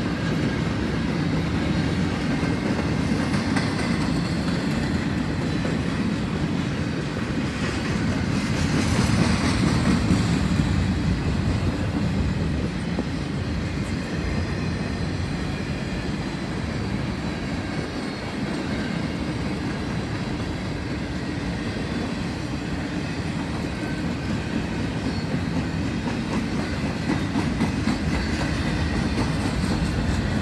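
Intermodal freight train's cars rolling past at track speed, the steady rumble and clatter of steel wheels on rail, a little louder about nine seconds in.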